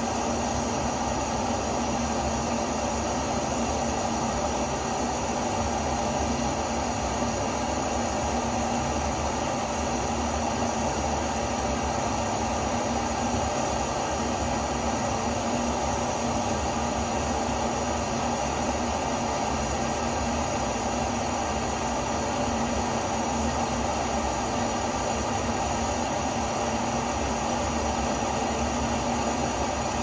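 Handheld gas torch burning with a steady, unchanging hiss.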